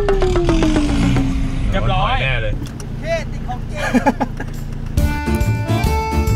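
Toyota pickup engine running, a steady low drone heard from inside the cab, with people's voices over it and a long falling tone in the first second or so. About five seconds in, the drone breaks off and steady musical tones take over.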